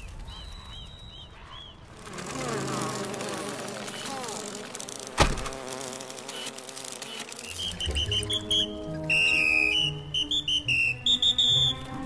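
Animated insect sound effects: buzzing that wavers in pitch, small high chirps, and one sharp click about five seconds in. In the second half, steadier layered tones and rapid high chirps build up and get louder.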